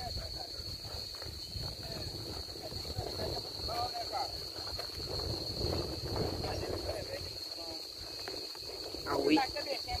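Open-air pasture sound while riding: wind rumbling on the microphone under a steady, high-pitched insect drone, with faint voices heard a few times and more clearly near the end.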